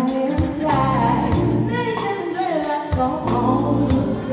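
A woman singing live into a handheld microphone, her voice gliding and sliding through a melodic line over a band, with bass and a steady beat of drum hits.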